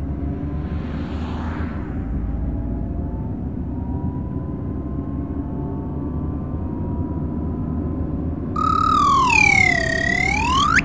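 Steady low rumble inside a moving car, with faint thin tones drifting slowly upward. Near the end a loud tone swoops down and then sharply back up.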